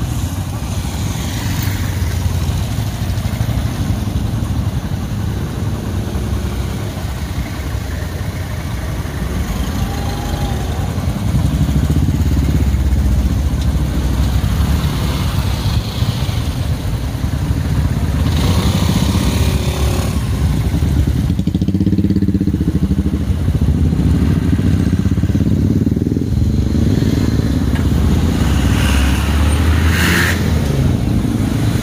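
Motorcycle and car engines idling and moving slowly in traffic, a continuous low engine noise that grows louder about twelve seconds in.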